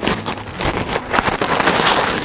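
Silk saree fabric rustling and rubbing as it is handled and draped, with uneven crackly scuffs.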